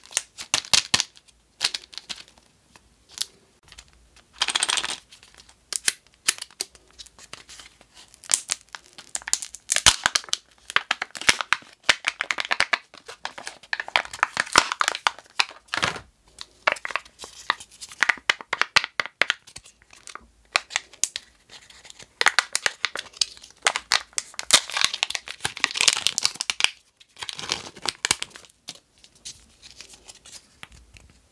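Kinder Joy eggs being unwrapped by hand: the foil wrapper crinkles and tears in repeated short bursts, mixed with sharp clicks as the plastic egg shells and the folding spoon are handled.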